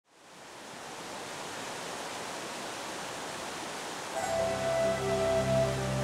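River water rushing over rock-ledge rapids, a steady hiss that fades in at the start. About four seconds in, music of long held notes comes in over it.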